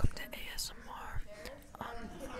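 A girl making a quiet, breathy, whispered noise with her mouth.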